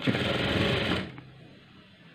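Electric sewing machine stitching a piping strip onto fabric, a fast, even run of stitches that stops about a second in.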